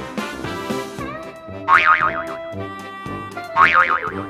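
Upbeat background music with two cartoon 'boing' sound effects, wobbling springy twangs, one a little under two seconds in and another near the end; the boings are the loudest sounds.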